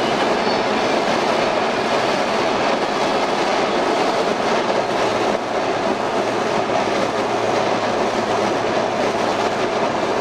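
Steady road and engine noise heard from inside the cabin of a moving Suzuki Samurai, a continuous rumble and hiss with no breaks.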